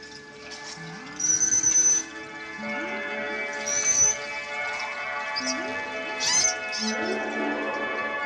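Beluga whale whistles and chirps over sustained musical tones: two high, level whistles in the first half, rising-and-falling gliding calls in between, and a squealing burst a little after six seconds in.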